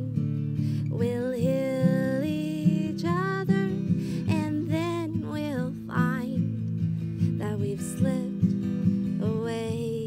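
A woman singing a slow melody with long held notes, accompanying herself on an acoustic guitar.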